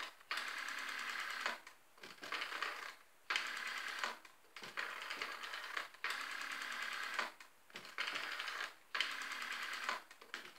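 Rotary telephone dial being turned and spun back, number after number. Each return is a whirring run of fast clicks about a second long, with short pauses between digits, about seven or eight in all.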